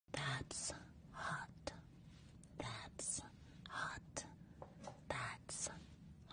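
A woman whispering close into a microphone in short, breathy phrases, with small clicks between them.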